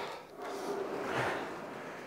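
Aviron rowing machine during a drive stroke: a soft whoosh of the flywheel spinning up, swelling about a second in.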